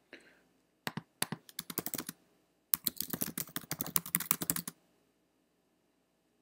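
Typing on a computer keyboard: a few spaced keystrokes about a second in, then a quick, dense run of typing that stops just before five seconds.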